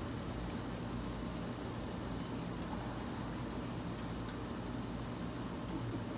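Steady low mechanical hum with an even hiss, unchanging throughout.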